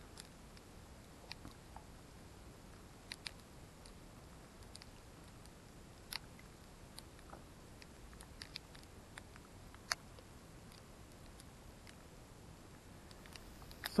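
Quiet mountain ambience with scattered faint, sharp ticks, a dozen or so spread unevenly, the loudest about ten seconds in: small snow pellets striking the camera and clothing during a snowfall.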